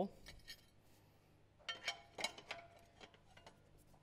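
Light metallic clinks and taps of steel hardware at a radius arm mount: a few small clicks, then a short cluster of clinks with a brief ring about two seconds in.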